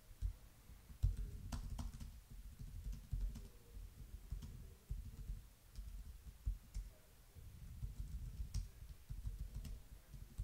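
Faint typing on a computer keyboard: irregular runs of keystrokes with a brief lull partway through.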